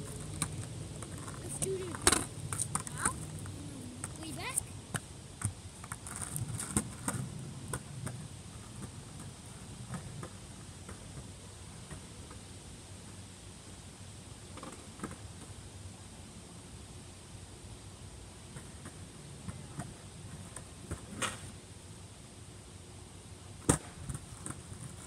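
Skateboard wheels rumbling and clicking over pavement as the board rolls away and fades. Sharp clacks of the deck hitting the ground come about two seconds in, near the end, and loudest just before the end.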